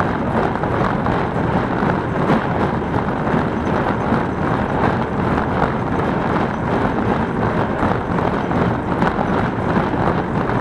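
Welger AP 53 conventional baler running off a Fordson Dexta tractor's PTO, its pickup and plunger working through old hay and straw being forked in: a loud, steady mechanical noise.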